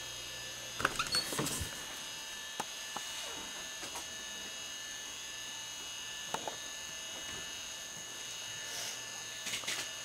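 Steady electrical hum and high whine, typical of a home camcorder's own motor and electronics noise, with a few light handling knocks and rustles, clustered about a second in and again near the end.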